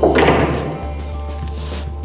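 A single dull thunk of a pool ball dropping into a table pocket right at the start, dying away within about a second, over background music.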